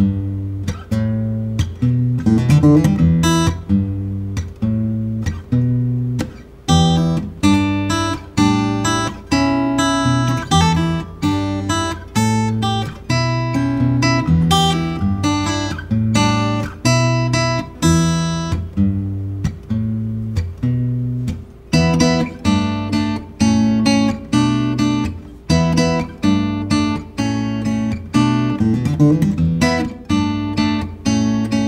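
Taylor Limited Edition 514ce Grand Auditorium acoustic guitar, with a bearclaw Sitka spruce top and blackwood back and sides, played solo. Chords and notes are struck in a steady rhythm, each ringing on into the next.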